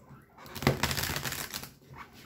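A tarot deck being riffle-shuffled: a rapid run of card-edge clicks lasting about a second, starting about half a second in.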